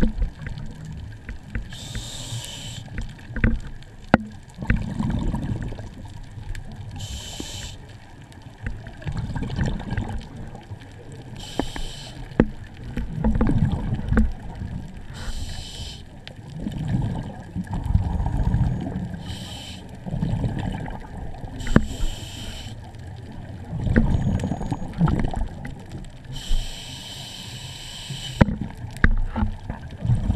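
Scuba diver breathing on a regulator, heard underwater: exhaled bubbles hiss and gurgle in about seven bursts a few seconds apart, over a low churning rumble of water on the camera housing.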